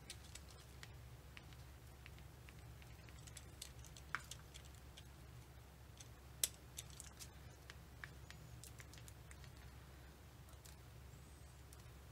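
Faint, scattered light clicks and ticks of a pointed tool poking tiny die-cut paper pieces out of a thin metal cutting die, with two sharper clicks around four and six and a half seconds in, over a steady low hum.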